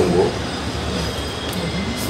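Steady background hum and hiss in a pause between spoken phrases, with the end of a voice in the first moment.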